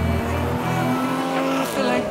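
Backing music of a pop-rap track with its bass dropped out about half a second in, and a car sound effect mixed over it in the break.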